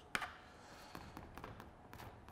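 A paintbrush tapping and stroking thick paint onto a canvas: one sharp tap just after the start, then faint scratchy strokes with a few small taps.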